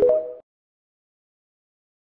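Tail of the TikTok end-card jingle: a few short electronic notes stepping up in pitch, over within half a second.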